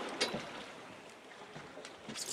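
Sea water washing along the side of a fishing boat while a hooked Spanish mackerel is hauled up out of the water, with one short sharp splash about a quarter second in.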